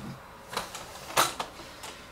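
A few knocks and clatters from a Pioneer CDJ-350 flight case's rigid panels and riveted metal edging as it is lifted and moved, the loudest about a second in.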